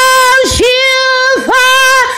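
A woman singing long held notes at a steady high pitch, a single voice with no instruments showing, with two brief dips in pitch between the notes, about half a second in and near the middle.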